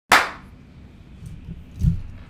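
A single sharp hand clap right at the start, ringing briefly in the room, followed near the end by a soft low thump.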